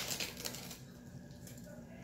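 A metal spoon scooping granulated sugar, a gritty scrape with small clicks that fades out within the first half second, then a faint quiet room.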